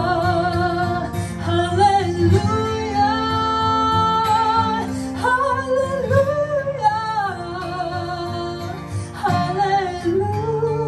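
A woman singing a slow melody with long held, wavering notes, accompanied by an acoustic guitar.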